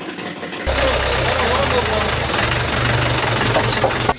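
Mahindra 4x4 jeep's engine idling steadily, starting abruptly about two-thirds of a second in.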